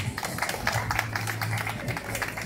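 A crowd of onlookers clapping, many quick claps overlapping irregularly.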